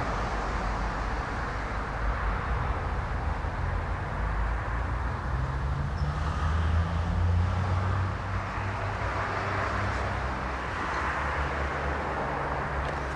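Steady outdoor background noise: a low rumble with an even hiss above it, unchanging throughout, with no distinct events.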